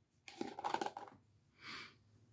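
Faint clicks and scraping of a glass lid being worked off a glass candle jar, followed near the end by a short sniff at the open jar.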